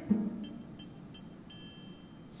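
Four faint, high, bell-like ticks, about three a second, the last ringing on a little longer.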